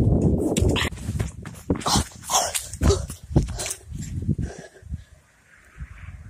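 A dog whimpering and yipping in short bursts among crackling, knocking handling noise and a low rumble of wind on the microphone.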